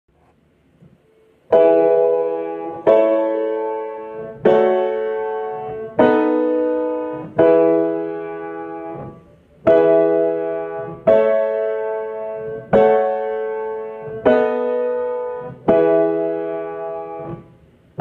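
Acoustic piano playing a slow chord progression in E: block chords struck about every second and a half, each left to ring and fade before the next. There is a slightly longer pause about halfway through.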